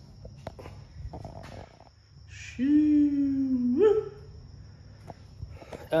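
A wordless voice-like hum, held for about a second and a half on a low note and rising in pitch at the end, with a few faint clicks of phone handling around it.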